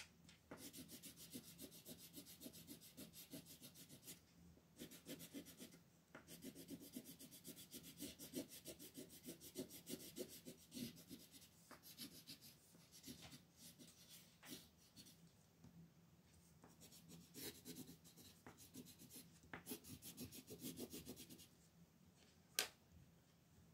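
Coloured pencil shading on paper in quick back-and-forth strokes, faint and scratchy. The strokes pause briefly about four and six seconds in, thin out in the second half, pick up again, and stop just before the end.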